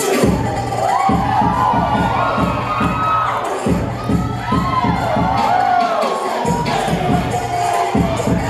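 Audience cheering and whooping loudly over dance music with a steady bass beat; the beat cuts out briefly twice, a little before and a little after the middle.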